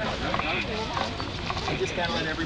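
Several people's voices talking over a low rumble with scattered clicks and clatter.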